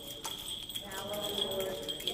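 A censer swung on its chains, its small bells ringing and its chains clinking in sharp clicks about twice a second, over a chanting voice.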